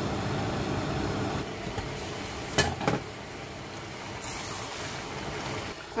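Tomato and prawn curry cooking in a pot with a steady hiss of simmering and stirring, which drops a little about one and a half seconds in. Two sharp knocks come a little before the halfway point.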